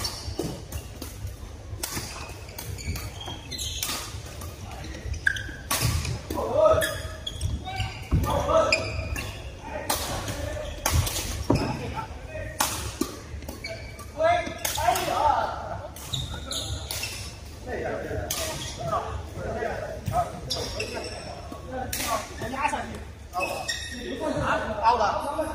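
Badminton rackets striking a shuttlecock during rallies: sharp cracks at irregular intervals of about a second or two, echoing in a large hall, with voices of players chatting in the background.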